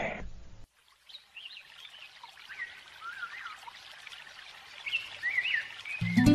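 Soft trickle of water with birds chirping now and then, a gentle outdoor ambience standing in for a very soft stream of urine.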